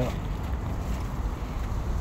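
Low, steady rumble of wind on the microphone in a short pause between words.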